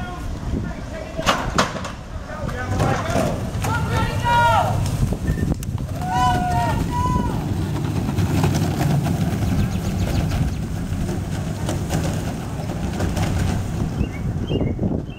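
Soap box derby cars rolling on asphalt with a steady low rumble, after two sharp clacks and a stretch of spectators shouting and calling out.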